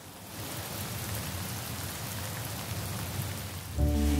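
Steady rain falling, an even hiss. Music with held tones comes in near the end.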